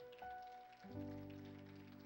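Faint background music of soft held notes, with a new, fuller chord coming in about a second in.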